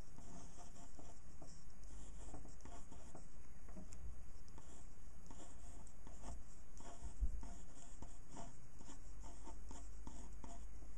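Pen scratching across paper in many short, irregular strokes as a drawing is inked.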